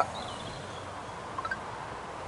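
Steady outdoor background hiss with no distinct event, broken only by two faint short chirps about a second and a half in.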